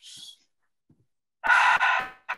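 A person breathing into a headset microphone: a short faint breath at the start, then a loud breathy exhalation about a second and a half in.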